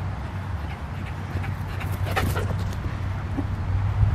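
A dog running up, giving a short cry about two seconds in, over a steady low hum.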